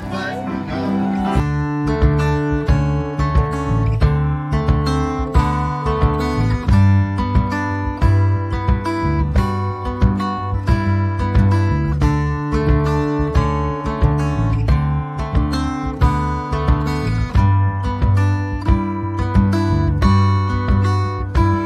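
Acoustic guitar music, strummed in a steady rhythm with held bass notes, coming in about a second and a half in.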